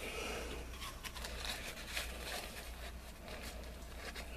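Faint rustling of a rolled paper napkin and small clicks of a plastic match case being handled as the napkin is pushed inside, over a low steady hum.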